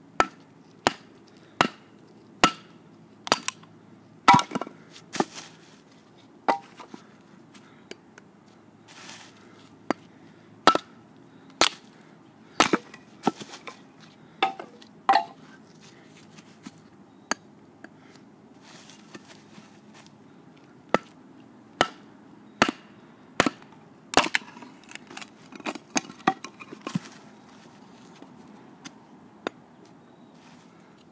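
Wooden baton striking the spine of a Schrade SCHF1 fixed-blade knife to drive it down through a board and split it: a series of sharp knocks at irregular intervals, about one a second, some in quick pairs, with short pauses between runs.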